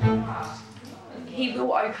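Speech only: voices, with "open up" spoken near the end.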